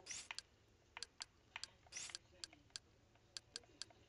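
Faint, sharp clicks, about a dozen at uneven spacing, with two slightly longer scratchy clicks near the start and about two seconds in, as the cursor of Kodi's on-screen keyboard is stepped from key to key with a remote.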